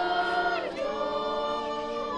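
A choir of several voices singing without accompaniment, holding long notes and changing to new notes about two-thirds of a second in.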